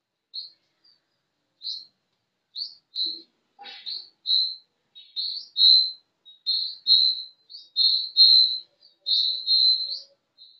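A bird chirping repeatedly in short, high chirps that come faster, longer and louder towards the end. A brief knock falls about three and a half seconds in.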